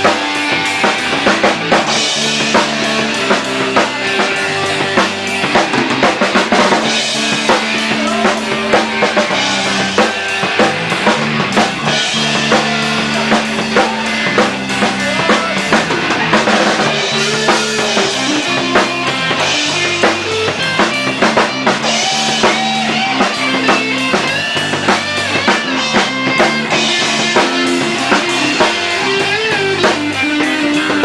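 A band playing loud live music together: a full drum kit with bass drum and snare, and an electric bass.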